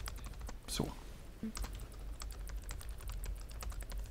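Typing on a computer keyboard: a quick, irregular stream of key clicks with a low steady hum underneath.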